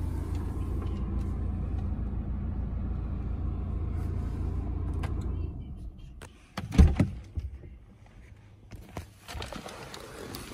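BMW 118d's 2.0-litre four-cylinder diesel idling steadily, then dying away about five and a half seconds in as it is switched off. About a second later comes a single loud knock, followed by faint handling noises.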